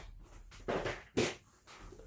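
Brief handling sounds: a short rustle a little under a second in, then a sharper tap just after.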